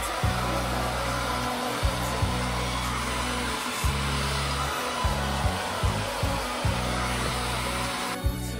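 Handheld hair dryer blowing steadily as it is run over the roots of natural hair to dry them straight, with background music and a regular beat underneath.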